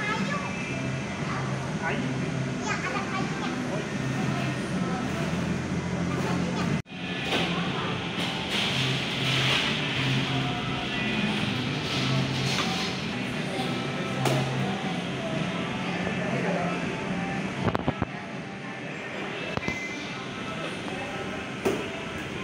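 Busy indoor public-space background: indistinct voices and background music over a steady low hum. The sound cuts out for an instant about seven seconds in, and a few short knocks come near the end.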